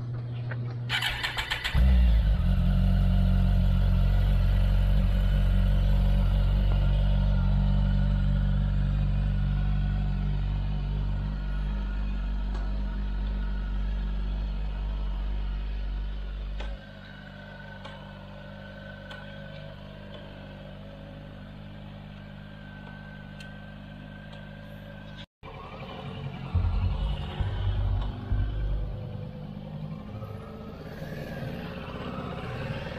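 A Kawasaki ZX14's inline-four engine cranked on the starter, catching about two seconds in and then idling loudly and steadily. Later the sound drops to a quieter engine hum. Near the end come uneven revs as the motorcycles pull away.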